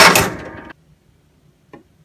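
Cub Cadet RZT 50 mower's electric starter cranking the engine in one short, loud burst that stops under a second in, a sign that the newly replaced solenoid now engages the starter. A faint click follows near the end.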